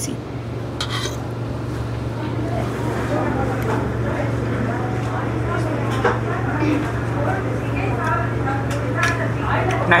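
Restaurant dining-room sound: a steady low hum under the faint murmur of other diners' conversation, with an occasional light clink of cutlery on a metal plate.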